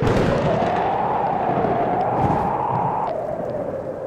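Logo-reveal sound effect: a sudden boom-like hit, then a steady rushing swell with a wavering tone that stops about three seconds in, the rush fading out at the end.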